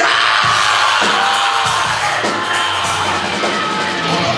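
Live heavy metal band playing loud: distorted electric guitars, bass and drums in a dense wall of sound, the bass notes shifting every half second or so.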